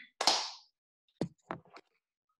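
A short rush of noise, then two sharp thumps about a third of a second apart, with a faint tick after them; the instructor is settling down onto the mat, and the thumps are his contact with the mat.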